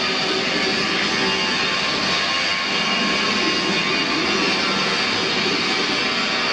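Steady, loud rushing machine noise with a faint hum that holds at one level throughout, from machinery running in the background.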